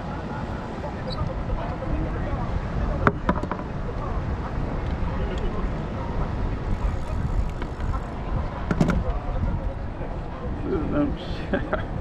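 Outdoor pier ambience: a steady low rumble of wind on the microphone with people talking in the background. There are a couple of sharp clicks, about three seconds in and again near nine seconds, as a hook and wire are handled.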